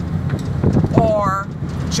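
Steady low rumble of a Suzuki car's engine and tyres, heard from inside the cabin as it drives along at about 40 km/h. A woman's voice is drawn out over it in the middle.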